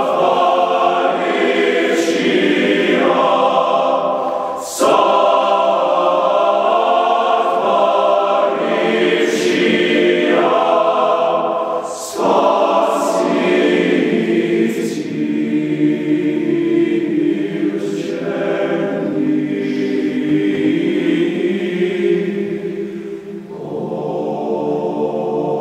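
Men's choir singing sustained chords in harmony, with short breaks about five and twelve seconds in and a fall near the end before the next phrase.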